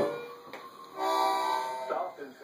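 A small child playing a harmonica: a faint breathy start, then one held chord of several reeds sounding together from about a second in, lasting just under a second.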